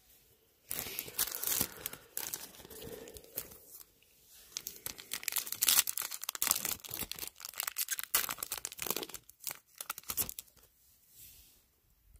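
A trading card pack's wrapper being torn open and crinkled in the hands, in two stretches of crackling: one starting about a second in, and a longer one from about four seconds to near the end.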